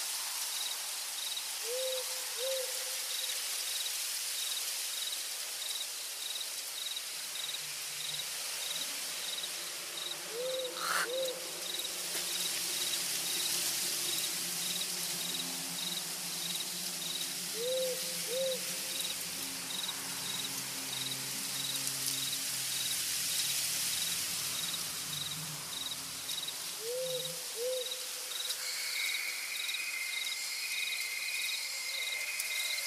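Night forest ambience: insects trill steadily with a regular chirp of about two a second, and an owl's two-note hoot comes four times, about every eight seconds. A low steady hum sits underneath through the middle.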